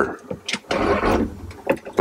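Rebuilt Whale Mark V diaphragm waste pump of a marine toilet being worked, drawing water through the bowl: a rush of water noise about a second long in the middle, with a few clicks.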